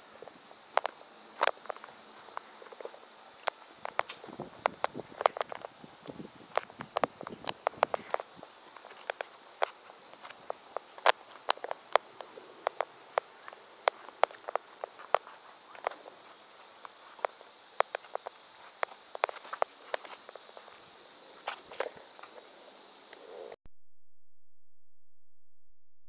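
Footsteps on pavement, a scatter of sharp irregular clicks and scuffs a few times a second over a faint steady hiss.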